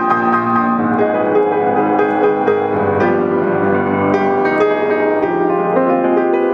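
White grand piano played solo: held chords with melody notes struck over them, the notes ringing on and overlapping.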